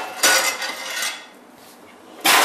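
Metal pans and baking tins clattering against each other as they are rummaged through in a kitchen cupboard while searching for a roasting tin, loudest in the first second, then quieter.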